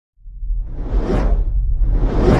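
Intro whoosh sound effects over a deep low rumble: one swelling whoosh peaks about a second in and fades, and a second begins near the end.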